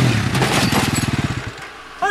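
A quad bike's engine coming off a rev. Its firing pulses slow down and fade over about a second and a half, with some crackle.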